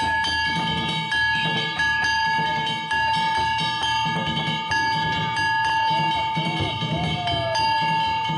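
Danjiri festival music: bronze hand gongs (kane) struck over and over in a quick rhythm, their bright ringing held between strokes, over deep drum beats.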